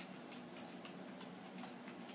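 Light keystrokes on a computer keyboard as a word is typed: about half a dozen faint clicks at an uneven pace, over a low steady hum.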